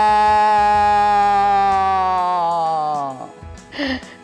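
A man's loud devotional jaikara cry of "Maa", a single call held on one steady pitch. It tails off with a slight drop in pitch just after three seconds in.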